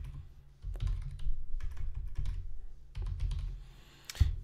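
Typing on a computer keyboard: a short run of keystrokes entering one word, starting just under a second in and stopping about three seconds in.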